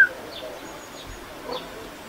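A short rising whistled call right at the start, then a few faint, brief high chirps from animals.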